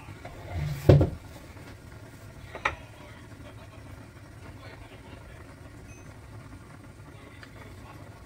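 A single heavy thump about a second in, then a short sharp click a couple of seconds later, over a low steady background hum.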